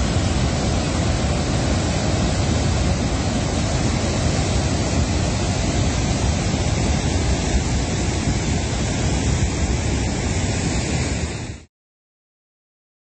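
Water pouring through a dam's open spillway gates: a loud, steady rush with a deep rumble, which cuts off suddenly near the end.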